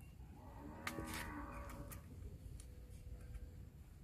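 A cow gives one faint, drawn-out moo about a second in. A few faint clicks come from a utility-knife blade splitting a small bougainvillea scion down the middle.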